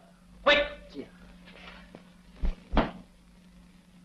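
A short vocal sound about half a second in, then two quick dull knocks close together near the end.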